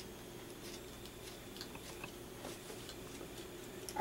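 Metal embossing stylus pressing and drawing feather lines into thin metal embossing foil on a craft foam pad: faint, irregular small scratches and ticks.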